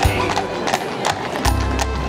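Music with a steady bass line, over which horses' hooves clip-clop as they walk along a paved street.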